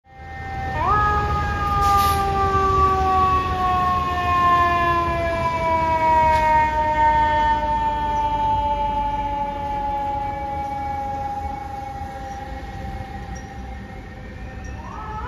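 A fire truck's siren winding up sharply about a second in, then falling slowly and steadily in pitch for the rest of the time, over a low rumble.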